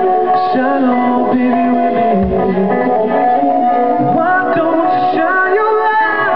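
Live band playing a song on amplified electric guitars and a drum kit, heard from among the audience.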